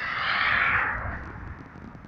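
A vehicle passing on the road: a swell of rushing tyre and road noise that peaks about half a second in and fades away over the next second, over a low rumble.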